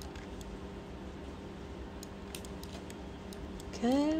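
Faint scattered clicks of a computer keyboard and mouse over a steady low electrical hum. A short rising 'hm' from a voice comes right at the end.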